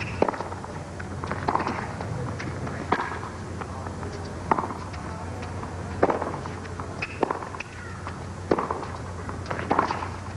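Tennis balls struck by racquets and bouncing on a hard court during a baseline rally. There is a sharp pop every second or so, some in quick pairs of hit and bounce.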